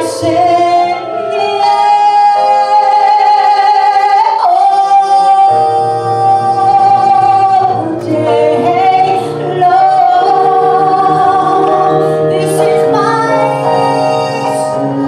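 A woman singing solo into a microphone, holding long notes, over instrumental accompaniment. A low bass line comes in about five seconds in.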